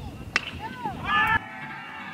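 A baseball bat hits a pitched ball with one sharp crack about a third of a second in, followed by shouting voices.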